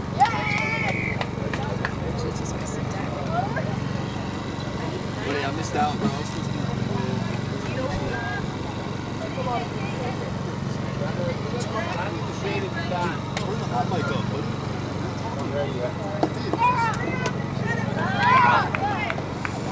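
Scattered voices of players and spectators calling across an open rugby field, over a steady low hum.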